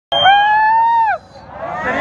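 A person's shrill, high-pitched held scream, about a second long, dropping in pitch as it ends, followed by rising crowd noise.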